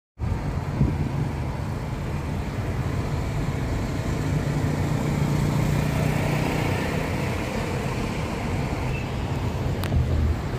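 Road noise inside a moving car's cabin: a steady low rumble of tyres and engine while the car drives along a highway.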